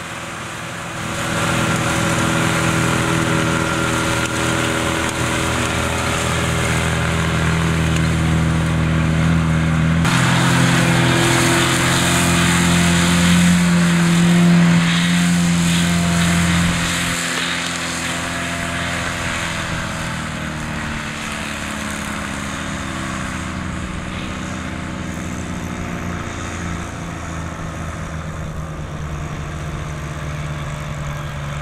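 Case tractor diesel engines running under load as they pull disc mowers through grass: a steady engine drone whose pitch bends as a tractor passes. The sound changes abruptly about 10 and 17 seconds in and is loudest around the middle.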